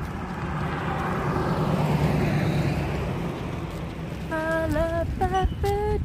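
A car passing along the street, its tyre and engine noise swelling and fading over about three seconds. Near the end, a woman hums a few held notes.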